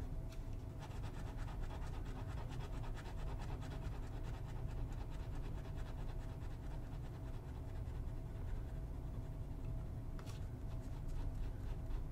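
TOZ Penkala Mirna fountain pen with a medium nib scratching across paper in quick, repeated hatching strokes as it fills in an ink swatch.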